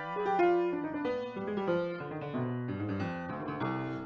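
Grand piano being played by hand: a passage of notes and chords at a moderate pace, the notes ringing on into one another.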